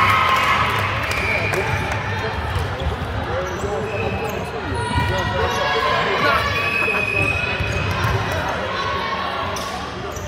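Many girls' voices talking and calling over one another in a large sports hall, with balls bouncing on the hard court floor now and then.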